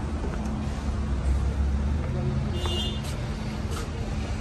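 Steady low rumble of vehicles, with faint voices in the background.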